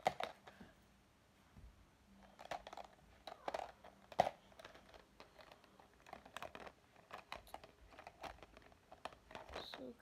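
Scattered light clicks, taps and rustling from things being handled close to the microphone, with one sharper click at the start and another about four seconds in.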